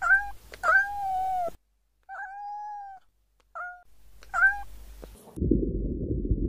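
Domestic cat meowing five times, each call held at a fairly level pitch; the second and third are long and the last two are short. Near the end a loud, low rumbling noise starts.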